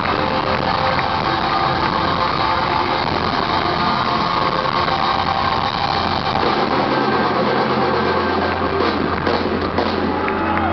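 Live rock band on stage between songs, with the crowd's noise and the instruments ringing. A low bass note is held from about seven seconds in, leading into the next song.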